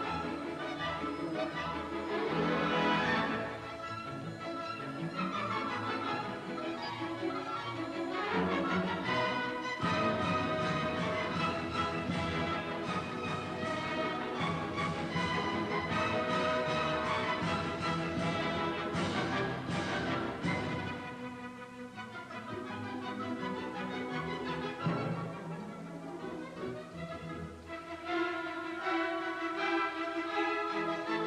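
Symphony orchestra playing a classical piece, bowed strings to the fore, growing softer for a few seconds about two-thirds of the way through before building again.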